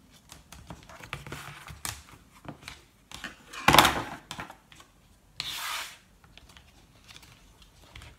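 Cardstock being handled and folded by hand, with small rustles and scrapes. A sharp knock a little before halfway, then a brief rubbing hiss of paper about five and a half seconds in.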